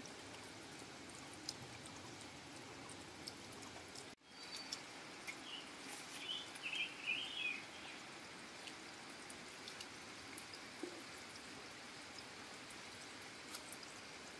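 Water trickling steadily from a seep in a muddy bank, with scattered small clicks and splashes of hands working in the wet hole. A brief run of high bird chirps comes about six to seven seconds in, and the sound drops out for a moment about four seconds in.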